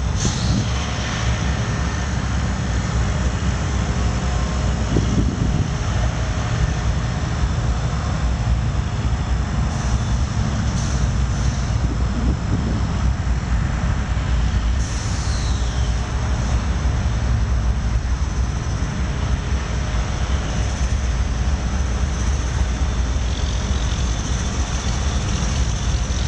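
Norfolk Southern diesel freight locomotives passing, followed by an intermodal train of trailers on flatcars rolling by. Engines running and wheels on the rails make a steady, loud noise that is heaviest in the low end.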